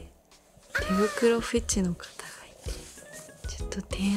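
A single cat-like meow about a second in, rising and then falling in pitch and lasting about a second, over faint background music.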